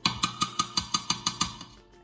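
A quick, even run of about ten sharp percussive knocks with a ringing tone, roughly six a second, stopping after about a second and a half.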